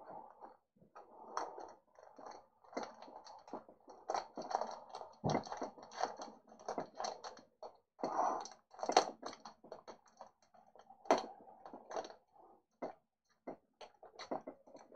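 Foil wrapper of a trading-card pack crinkling and tearing as it is pulled open by hand: a quiet run of irregular small crackles and rustles.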